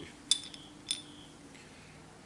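Two light metallic clinks about half a second apart, each with a short ringing tail, as oily pistons of a 10P30-style A/C compressor are handled and knocked together.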